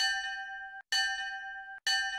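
A bell-like chime sound effect struck three times, about a second apart. Each strike rings briefly on one bright pitch with overtones, then cuts off abruptly.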